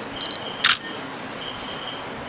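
Digital camera taking a picture: two short high beeps as it focuses, then a sharp shutter click about half a second later.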